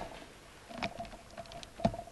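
Several small clicks, ending in a louder low thump near the end.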